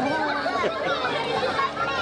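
Crowd chatter: many children and adults talking at once, with high children's voices calling out over the hubbub.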